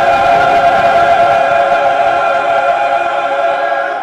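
Mixed church choir holding one long final chord, which fades away near the end.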